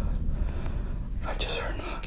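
A person whispering briefly, a little over a second in, over a low rumble.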